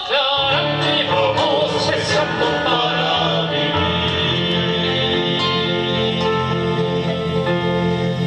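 Male vocal quartet singing in harmony with acoustic guitar and keyboard. The voices move with vibrato for the first few seconds, then settle on a long held chord from about four seconds in.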